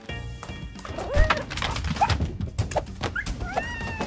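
Cartoon soundtrack: background music under a string of short, high yips from an animated puppy, with a heavy thump about a second in.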